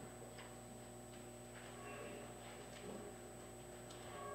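Quiet room tone with a steady low electrical hum and faint, scattered ticks and small knocks.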